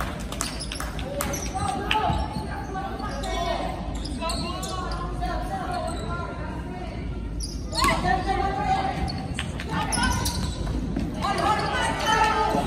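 Basketball bouncing on a wooden gym floor, with several bounces in the first couple of seconds. Voices from spectators and players carry through the large gym.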